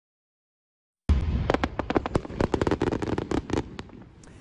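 Aerial fireworks display: a dense, rapid run of crackling pops and bangs that starts suddenly about a second in.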